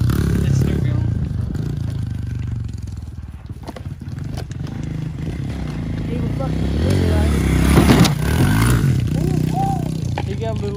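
Small pit bike engine running and revving as the bike is ridden around, fading for a few seconds then building again to its loudest about eight seconds in.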